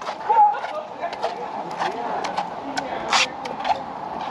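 Slow, uneven footsteps on the glass floor panels of a cliff walkway, heard as scattered short clicks and scuffs, the loudest about three seconds in, with faint voices in the background.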